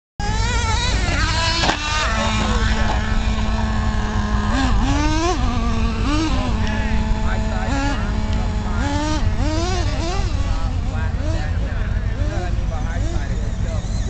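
Traxxas E-Revo electric RC truck's motor whining, its pitch rising and falling again and again as the truck accelerates and slows over the dirt jumps. Heavy wind rumble on the microphone lies under it.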